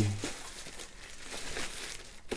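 Thin plastic bag around a robot vacuum being handled and pulled off, crinkling and rustling softly and unevenly.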